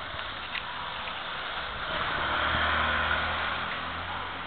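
Street traffic: a motor vehicle passes close by, its engine hum and tyre noise swelling about halfway through and easing off near the end.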